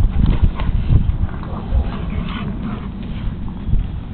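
A Siberian husky and a young puppy play-fighting on a raised dog cot: a run of scuffles and thumps, heaviest in the first second and a half, with another bump near the end.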